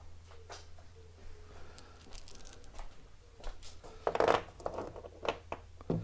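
Metal hand tools clinking and clattering as they are handled and set down: scattered sharp clinks, with a louder clatter about four seconds in.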